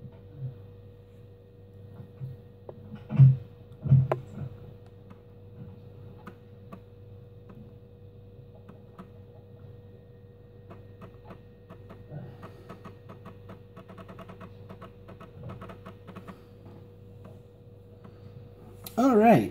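Floppy disk drive of a Compaq LTE 5280 laptop reading the MS-DOS 6.22 setup disk as the machine boots: a rapid run of small clicks from the drive heads over a steady faint hum. There are two louder thumps about three and four seconds in.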